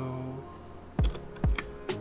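Computer keyboard keys clicking as a value is typed into a settings field, over electronic background music with a steady low drone and two low drum hits about a second and a second and a half in.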